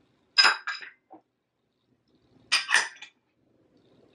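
Kitchenware clattering and clinking: two short bursts as a blender jar and glass dishes are knocked and set down on the counter, about half a second in and again near three seconds, with a small knock between them.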